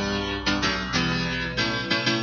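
Hardcore dance track playing from the DJ decks. It has a fast, steady beat of about three beats a second under a pitched melodic line.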